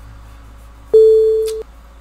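A single loud electronic beep about a second in: one steady mid-pitched tone that opens with a click and cuts off after under a second. It is the sound effect of a subscribe-button animation, over a faint low hum.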